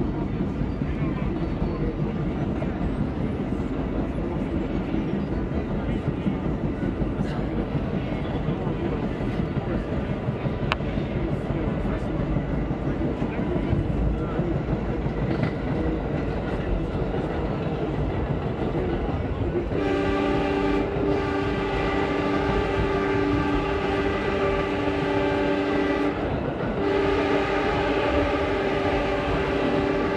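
R32 subway train running at speed, with a steady rumble and clatter of wheels on the rails. About two-thirds of the way in, the train's horn sounds a long, steady chord for about six seconds, breaks off briefly, then sounds again near the end as the train runs through a local station.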